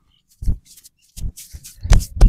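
Hands slapping and rubbing on a clothed back and shoulders during a vigorous massage. There is a single thump about half a second in, then a quicker run of thumps and rubs that grows louder toward the end.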